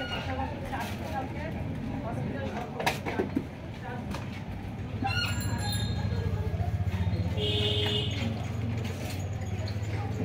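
Indistinct background voices over a steady low rumble that grows louder about halfway through, with a short high-pitched tone about three-quarters of the way in.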